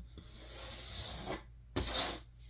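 Pointed tool scraping and pushing at a die-cut 3D puzzle sheet, working small pieces free: a scratchy rubbing lasting about a second, then a louder scrape near the end.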